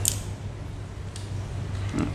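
Faint handling noise of a fishing rod being turned in the hand: a short rustle at the start, a few light clicks about a second in, and a small knock near the end, over a steady low hum.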